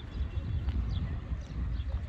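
Footsteps of someone walking on brick paving, under a heavy, uneven wind rumble on the microphone, with faint high chirps scattered through.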